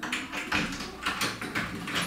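A sudden, irregular run of knocks and rattles at a front door, as it is about to be opened to let someone in.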